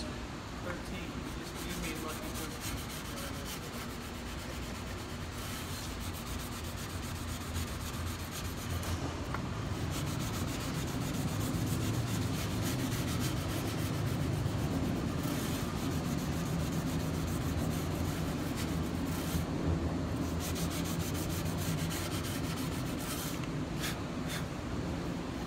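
Fret ends along the edge of an electric guitar's neck being hand-sanded with 400-grit sandpaper to round them over: quick, steady back-and-forth rubbing strokes that grow louder about ten seconds in.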